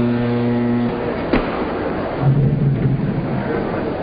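Westinghouse Elektro robot's electric motor humming steadily, then cutting off about a second in as the robot halts on command, followed by a single sharp click.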